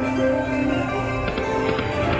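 Big Hot Flaming Pots slot machine playing its bonus-feature music, a steady electronic melody with small chimes as the bonus reels respin.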